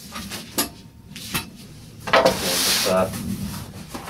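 A large cardboard shipping box being handled and turned on a cloth-covered table: a couple of light knocks, then about halfway through roughly a second of loud scraping and rustling as the box slides round.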